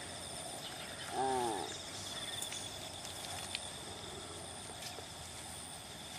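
Steady chorus of insects, several high-pitched, finely pulsing trills that run on without a break. A short spoken word comes about a second in.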